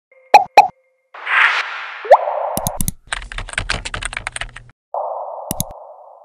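Sound effects of a news channel's logo intro: two sharp pops, a whoosh, a quick rising swish, then about a second and a half of rapid typing-like clicking over low thuds, and a last whoosh that fades near the end.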